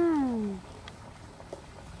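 A woman's long, drawn-out wordless vocal sound, held then falling in pitch and ending about half a second in; then quiet with a couple of faint clicks.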